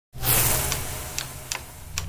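Opening of a produced intro sound effect: a hissing swell over a low hum that fades, then four sharp clock-like ticks spaced roughly half a second apart.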